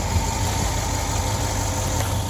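Steady engine idle with a low rumble, from the Titan XD's 5.0-litre Cummins turbodiesel V8.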